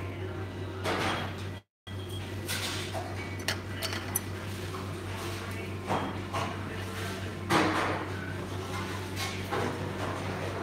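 Chopsticks clicking and scraping against a ceramic rice bowl while eating, over a steady low hum; the loudest noise comes about seven and a half seconds in. The sound cuts out completely for a moment just before two seconds in.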